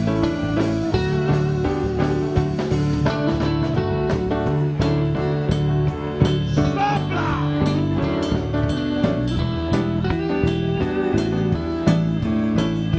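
Live church worship band playing slow instrumental music: sustained keyboard chords and guitar over a steady drum beat, with cymbal strikes standing out from about three seconds in.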